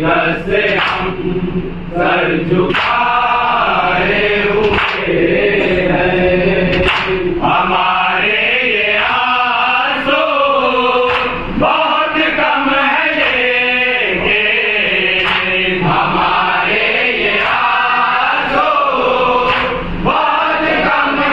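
Men chanting an Urdu salam, a devotional elegy. A lead reciter sings at a microphone and other male voices join in, in a slow, melodic chant.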